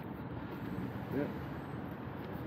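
Steady hum of city street traffic.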